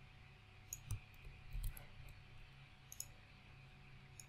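A handful of faint clicks from a computer mouse and keyboard as code is copied and pasted between windows: several in the first two seconds and one more near the end.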